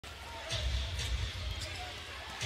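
A basketball being dribbled on a hardwood court, a run of low thuds from the bounces over faint arena noise.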